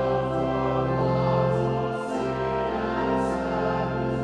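Church choir singing a hymn in several parts over sustained organ accompaniment with steady low bass notes. One continuous phrase ends near the close.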